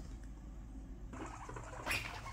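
Faint sounds of several guinea pigs moving about and calling on a quilted mat, with a short, sharper sound near the end.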